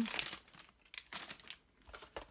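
Plastic foil bag crinkling as a comic magazine is slid out of it, followed by a few faint rustles and taps of the magazine being handled on the table.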